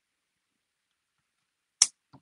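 Silence, then near the end one sharp plastic click from a small plastic robot figure being worked by hand, as a tight clip-on shoulder piece is pried off.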